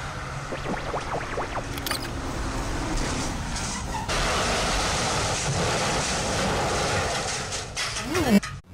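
Dense, steady noise like traffic or a passing vehicle, with a low rumble, sampled into an experimental noise track. A few short rising whistle-like tones come through in the first two seconds. The noise jumps suddenly louder about four seconds in and holds.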